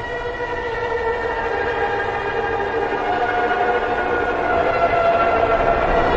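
A sustained synthesizer chord from a phonk instrumental, held without drums and slowly swelling louder.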